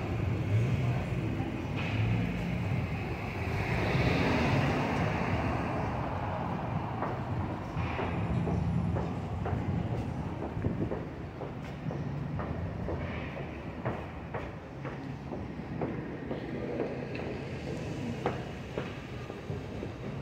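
City street traffic: a steady rumble of vehicles passing on the road beside the sidewalk. It swells as a vehicle goes by about four seconds in, with scattered sharp clicks in the second half.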